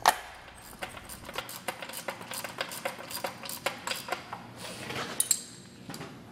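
Irregular metallic clicks and clinks of steel bolts, nylock nuts and a hand tool as a grinder pump's top housing is bolted down. The sharpest click comes right at the start.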